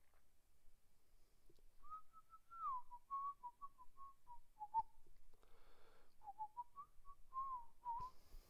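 A man idly whistling a tune through his lips, a wavering melody held around one middle pitch, in two phrases with a short breath between them.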